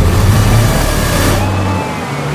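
A 4WD's engine running as the vehicle drops nose-first down a steep bank into a muddy creek crossing. Water splashes up loudly from the wheels in a rush that dies away about a second and a half in, with the engine note carrying on underneath.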